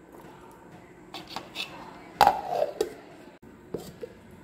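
A few light clicks and knocks of kitchen utensils being handled, then a short voice sound with a falling pitch about two seconds in.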